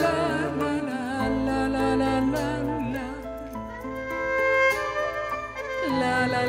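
Live band music from a small orchestra with violin: a passage with an ornamented, wavering lead melody over sustained chords, and a bass coming in about a second in.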